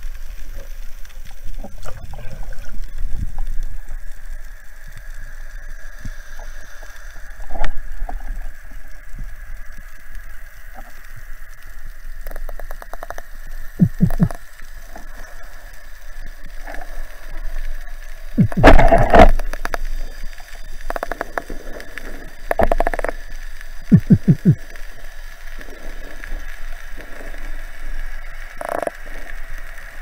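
Underwater sound through a camera housing mounted on a speargun: a faint steady high tone under scattered clicks and knocks from the gun and diver's gear. There are rapid clusters of knocks at a few points and one louder rush of noise a little after halfway.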